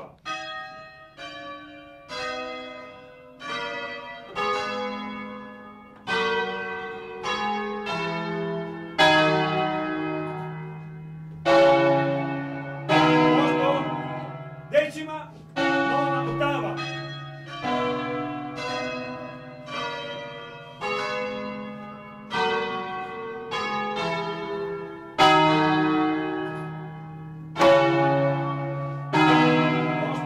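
Church bells rung in full swing (a distesa) by ropes in the Bergamasque way: several tuned bells strike in turn, roughly one to two strokes a second, each stroke ringing on into the next. The peal grows louder over the first nine seconds or so as the ringing gets under way, then stays loud.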